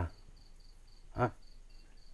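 A cricket chirping steadily and faintly, short high chirps at about three a second. A brief voice sound cuts in just over a second in.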